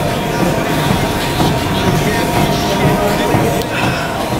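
Gym treadmill running under a person walking at a steep incline: a steady hum of motor and belt over a low rumble.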